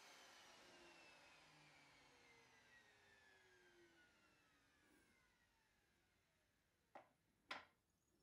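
Faint whine of a table-mounted router spinning down after being switched off, falling steadily in pitch and fading over about four seconds. Then two short knocks near the end as the wooden workpiece is set down on the router table.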